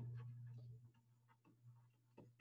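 Near silence with a few faint, short ticks of a stylus tapping on a drawing tablet while handwriting. A low steady hum fades out in the first second.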